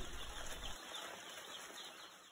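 Faint peeping of a crowded brood of young broiler chicks, fading away.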